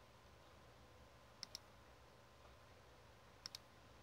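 Computer mouse clicking: two quick clicks in succession about one and a half seconds in, and another quick pair about two seconds later, over near-silent room tone.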